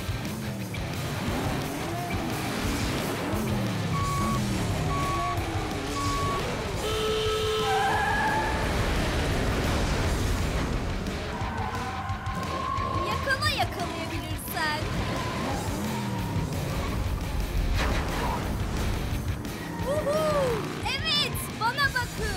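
Animated race-start sound effects: three short beeps of a start countdown, then a higher go tone, followed by race car engines revving and passing, with pitch rising and falling, over background music.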